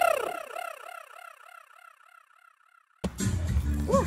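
The song's music stops and leaves a warbling echo tail: a repeated arched chirp, about five a second, that slowly falls in pitch and fades away over about two seconds. Near silence follows. Outdoor location sound with a voice cuts in about three seconds in.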